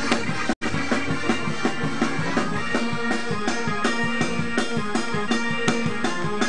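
Live gospel praise-break music: a drum kit keeping a fast, steady beat under sustained keyboard chords. The sound drops out for an instant about half a second in.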